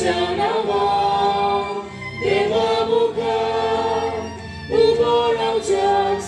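Choir singing a hymn in slow phrases of long held notes, with a breath between phrases about every two to three seconds.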